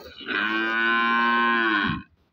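A cow mooing: one long, loud call of about a second and a half, steady in pitch and dropping as it ends.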